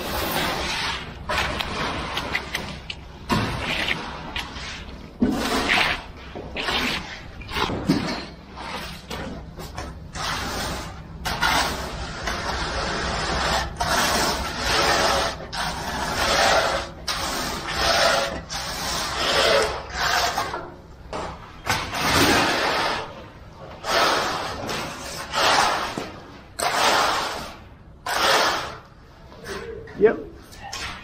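Freshly poured wet concrete being worked by hand with a hand float and then a straight screed board dragged across the surface: a series of wet scraping strokes, roughly one a second.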